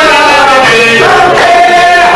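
Men's voices singing together in long, wavering held notes: a Lebanese zajal chorus taking up the refrain.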